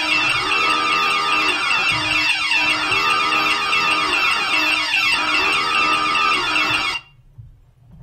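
Stream donation-alert music jingle playing loudly, a short phrase repeating about every two and a half seconds, cutting off abruptly about seven seconds in.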